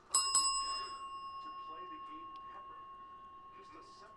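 A small bell struck, its clear ringing tone fading slowly over about four seconds: a big-hit bell marking a big pull.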